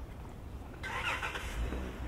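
A motor vehicle on the street over a steady low rumble, with a burst of noise about a second in that lasts about a second.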